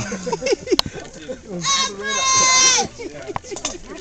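A woman's high-pitched squeal, wavering at first and then held steady for about a second, amid people talking.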